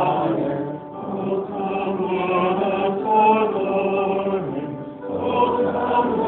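A choir singing in chant-like style, holding long notes, with short breaks between phrases about a second in and near five seconds.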